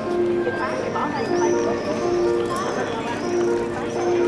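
Clarinet played solo: a slow melody of held notes, with people talking around it.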